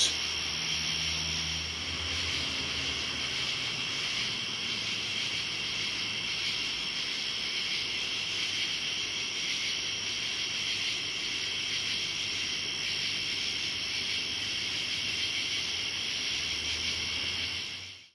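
A steady chorus of night insects in the woods: a continuous, rhythmic, high-pitched rasping that sounds like a shaker being shaken back and forth.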